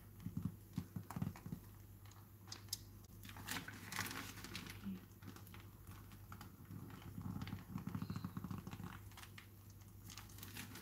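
Plastic piping bag crinkling as it is squeezed to pipe stiff meringue, in runs of quick faint crackles about a second in and again about seven seconds in, over a low steady hum.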